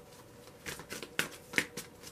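A deck of tarot cards shuffled by hand, the cards slapping against each other in a run of quick, sharp clicks that start about a third of the way in.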